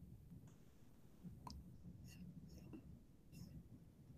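Near silence over a low room hum, with several faint clicks of a computer mouse spread through the few seconds as screen sharing is set up.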